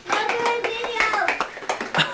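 Plastic shaker bottle being shaken hard, its contents rattling in rapid repeated strokes, with a person's voice over it.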